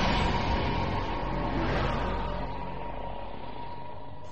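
Cinematic rumble and hiss fading out slowly, with a steady thin tone held underneath.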